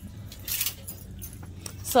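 Clothes hangers clinking and scraping on a metal clothing rack, a short jangly burst about half a second in, over a low steady hum.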